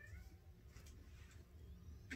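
Near silence, with a faint, brief high whine of a small dog at the start.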